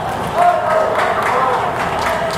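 A voice speaking over the stadium public-address system.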